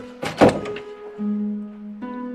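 Two heavy thuds close together, the louder about half a second in, over soft background music with long held notes.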